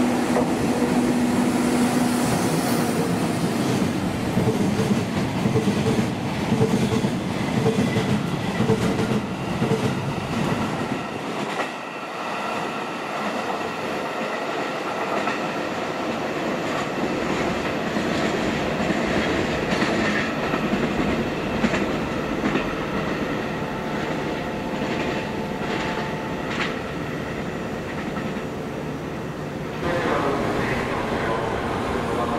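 Freight train of covered hopper wagons rolling past at close range: a steady rumble with wheel clatter over the rail joints, and a steady hum for the first couple of seconds. The deep rumble thins out from about eleven seconds in as the last wagons pass and pull away.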